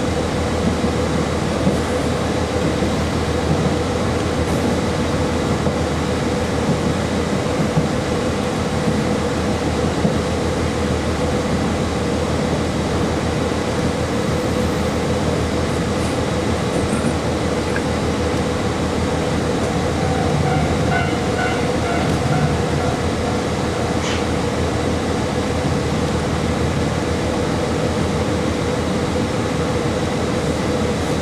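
Inside a KiHa 40 series diesel railcar running along the line: a steady drone of the underfloor diesel engine and wheels on rails, with a constant hum and a few light knocks.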